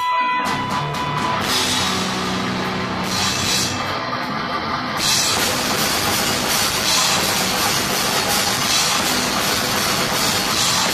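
Live heavy metal band playing amplified: electric guitars riffing over a drum kit. About halfway through, the drums and cymbals come in fully and the sound thickens.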